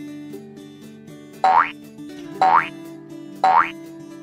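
Quiz countdown sound effect over light background music: three short, loud rising pitch sweeps, one each second, ticking off the seconds.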